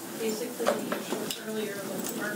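Faint, distant speech in a room, with a few sharp clicks and knocks, the loudest a little past a third of the way through and again past halfway.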